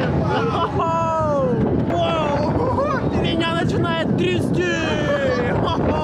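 Riders on a spinning thrill ride yelling and crying out, several voices overlapping in long falling cries, over a steady low rumble of wind on the onboard microphone.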